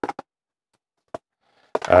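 Near silence with a single short click about a second in, then a man's voice starts near the end.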